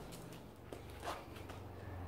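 Faint rustling from hands working a long-haired dog's coat and handling a plastic spray bottle, with a couple of soft swishes about a second in, over a low steady hum.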